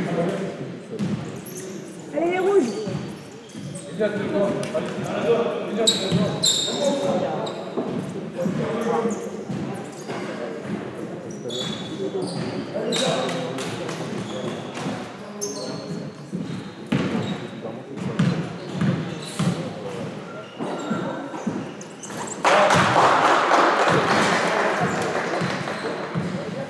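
Basketball bounced on a sports hall floor, with sneaker squeaks and echoing voices during a free-throw stoppage. Near the end comes a sudden burst of applause and cheering as a free throw goes in.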